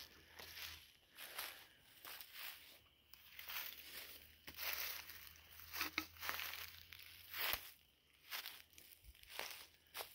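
Footsteps crunching through dry leaves, twigs and brush at a steady walking pace.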